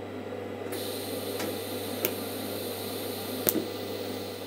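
TIG welding torch hissing steadily while a tack weld is put on stainless steel strip. The hiss starts abruptly just under a second in, with a few faint clicks, over a low electrical hum.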